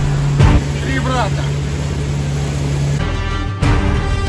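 Motorboat's outboard engine running steadily at speed, a low drone with rushing water and wind noise, and a voice calling out briefly about a second in. At about three seconds it gives way abruptly to background music.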